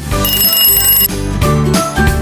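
Alarm-clock ring sound effect, about a second long, signalling that the quiz timer's time is up, over upbeat background music.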